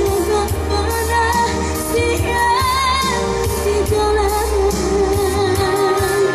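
A woman singing a Minang song into a microphone over amplified band accompaniment with a steady low bass line. Her voice wavers in vibrato about halfway through, then holds a long note.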